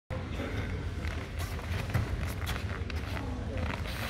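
Large-hall background of indistinct voices and a steady low hum, with scattered soft shuffles and taps of feet in foot protectors on a foam karate mat.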